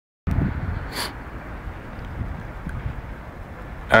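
Wind rumbling on the camera microphone over steady outdoor background noise, with one brief crackle about a second in.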